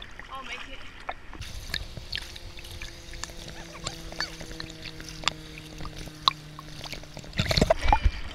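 Water sloshing and lapping against a waterproof action camera held at the surface, with many small sharp ticks and taps of water on its housing. A faint steady drone runs through the middle, and there is a louder splash near the end as a hand paddles the water.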